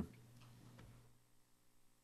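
Near silence: faint room tone, with a low hum that fades out about a second in.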